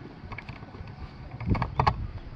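Two thumps with sharp clicks near the end, over a low rumble of wind and handling noise on a handheld camera's microphone.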